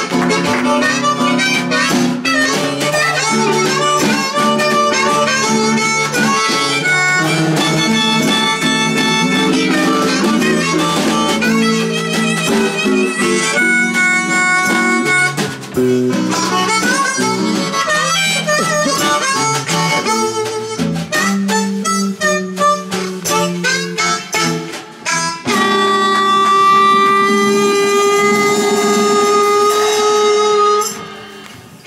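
Live blues: a harmonica played into a microphone solos over a strummed archtop guitar and a snare drum with cymbal. Near the end the harmonica holds one long note.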